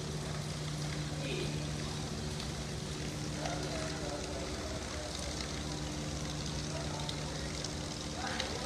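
Sports-hall ambience: a steady low hum and hiss, with faint children's voices in the background.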